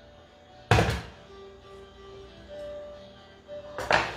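The steel Thermomix mixing bowl knocked down with a heavy thunk about a second in, and knocked again near the end as it is handled back onto the machine, with faint music underneath.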